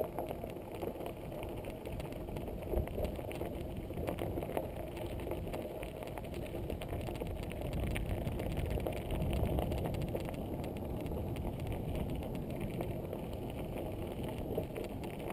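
Mountain bike rolling over a gravel and grass double-track: a steady crunch of tyres on loose stones with many small rattles and clicks from the bike, growing a little louder about two-thirds of the way through.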